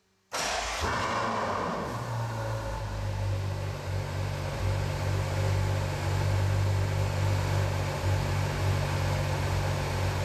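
A car engine starting up with a sudden loud burst, then idling steadily with a low, even note.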